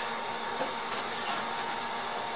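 Steady, even hiss of workshop room noise, with a faint light click about a second in.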